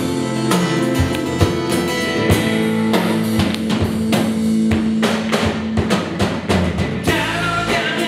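A live rock band playing a section with no words, led by a drum kit (a Premier kit) with steady drum and cymbal hits over sustained guitar and bass notes.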